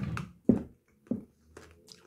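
Two short sharp knocks about half a second apart, the first the loudest, followed by faint rustling handling noise.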